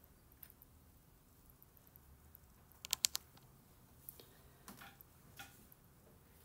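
Faint taps on a tablet touchscreen: a quick cluster of three taps about three seconds in, then a few single, lighter taps.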